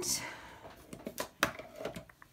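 A few light clicks and knocks of plastic paint bottles and markers in a wire basket being set down and handled on a tabletop, the first about a second in and another near the end.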